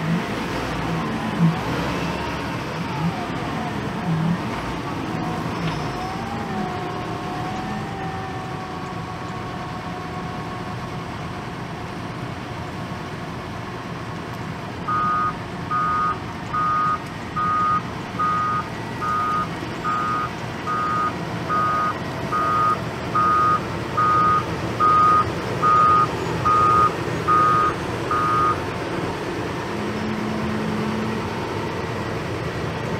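Doosan DL420 CVT wheel loader working: its diesel engine runs steadily with whines rising and falling as it loads. About halfway through its reversing alarm starts beeping, one beep roughly every three-quarters of a second for some 13 seconds, as the loader backs away.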